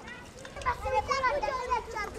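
Children's voices chattering and calling, louder from about half a second in.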